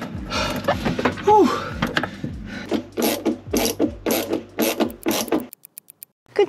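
Ratchet clicking in short strokes as it tightens a Jubilee clip (worm-drive hose clamp) on a thick below-waterline hose. The clicks speed up to about three a second in the second half and stop suddenly shortly before the end.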